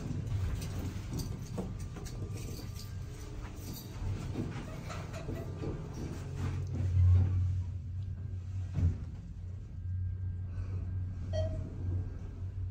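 Traction elevator doors sliding closed in the cab, with a few clicks and knocks and a steady low hum that swells around the middle and again near the end.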